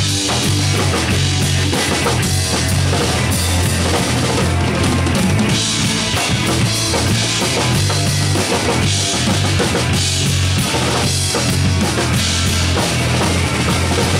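Live rock band playing an instrumental passage: a full drum kit with bass drum and snare driving steadily under electric guitar and heavy, repeating bass notes.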